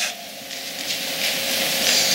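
Thin Bible pages rustling as they are leafed through close to a lapel microphone: an even papery rustle that grows louder over the last second and a half.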